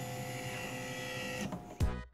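Optical lens edger running: a steady machine whine with several held tones, fading out about a second and a half in, followed by a brief louder sound just before the end.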